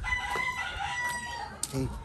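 A rooster crowing: one long cock-a-doodle-doo held for about a second and a half.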